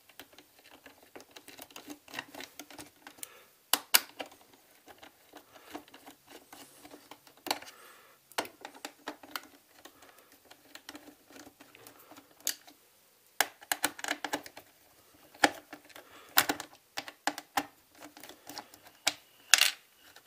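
Plastic parts of a Xiaomi Mijia robot vacuum being handled during disassembly: irregular clicks, taps and rattles of the plastic sensor cover and shell, with louder clusters of clicks about four, thirteen to fourteen and sixteen to nineteen seconds in.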